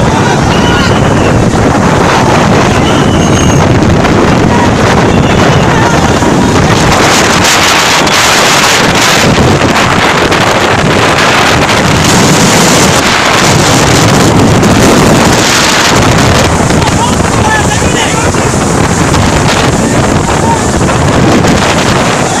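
Cyclone-force wind with driving rain, battering the phone's microphone in a loud, unbroken rush of noise.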